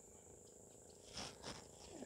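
Near silence over a steady, faint, high insect drone, broken by two soft, brief rustles a little past the middle.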